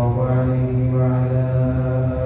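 A man's voice chanting slowly in long, held melodic notes, in the style of Arabic religious recitation.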